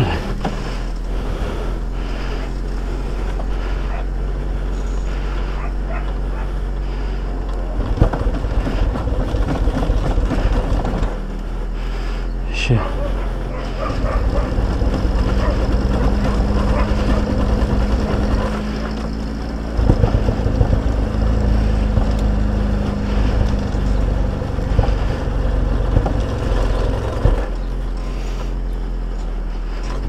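Steady engine drone under heavy wind rumble on a motorcycle being towed behind a car on a strap to bump-start it; stretches of louder, rougher wind noise come and go from about eight seconds in. The bike has not caught.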